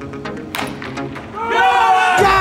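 Background music, with the sharp crack of a baseball bat hitting a ball off a tee about half a second in, then a loud excited shout of celebration near the end.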